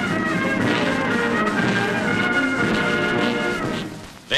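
Brass band music playing slow, held chords that fade away near the end.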